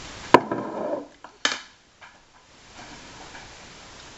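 A metal spoon clinks sharply against the glass blender jar a third of a second in, with light rattling after it, then a second sharp clink about a second later, likely the spoon being set down.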